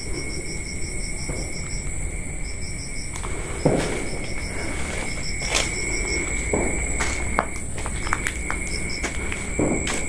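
Night insects, likely crickets, chirping in rapid pulsed trains over a steady high-pitched drone, with a few footsteps crunching on dry leaves and debris in the middle and near the end.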